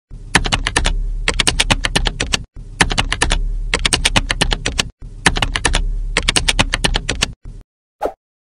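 Computer keyboard typing: three runs of rapid key clicks, each about two and a half seconds long, with brief breaks between them and a low hum underneath.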